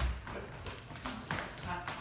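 Collegiate Shag footwork: two dancers' shoes striking a wooden floor in a few sharp separate taps as they step and hop through the basic.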